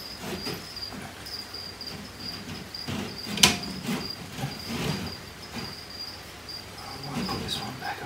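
A cricket chirping steadily and continuously in the background. Over it, rustling and light knocks as branches are handled inside a glass terrarium, with one sharp click about three and a half seconds in.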